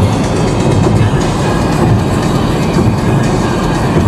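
Steady road noise inside a moving car's cabin as it drives across a bridge, with background music playing over it.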